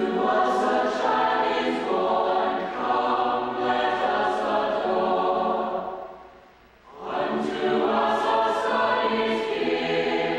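Mixed choir of men's and women's voices singing in four parts, an English arrangement of an old Christmas chant. One sung phrase dies away about six seconds in, and after a short breath the next phrase starts about a second later.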